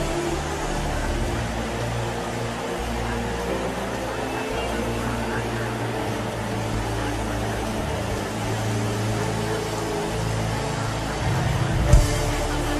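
A congregation praying aloud all at once, a dense mass of overlapping voices, over sustained keyboard chords with a held bass. A short knock right at the end.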